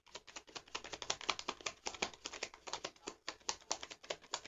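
A deck of tarot cards being shuffled by hand: a fast, dense run of crisp card clicks, about a dozen a second.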